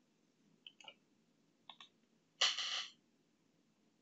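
Computer mouse clicking, two quick pairs of clicks, followed about two and a half seconds in by a louder half-second rustling noise close to the microphone.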